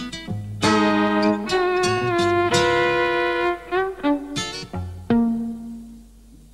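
Violin and cello playing a chamber-style string passage in a live progressive-rock performance. Short separate notes give way to long held bowed notes, and the passage ends on a low held note that fades away near the end.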